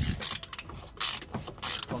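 Hand ratchet wrench clicking in short bursts as it works a door hinge bolt loose.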